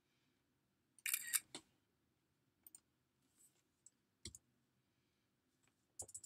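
Computer mouse and keyboard clicks, faint: a quick cluster of clicks about a second in, then a few single clicks spaced out through the rest, the sound of selecting, copying and pasting text.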